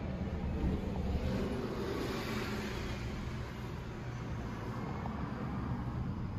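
Steady low vehicle rumble, with a rushing noise that swells and fades about two seconds in, as of a vehicle passing by.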